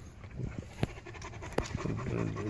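Central Asian Shepherd puppies suckling at their standing mother, with panting breaths and a few short, sharp wet smacks at irregular moments.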